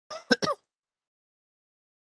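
A person briefly clearing their throat, three quick bursts within about half a second.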